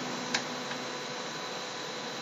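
Room tone: a steady hiss with a faint hum, and one soft click about a third of a second in.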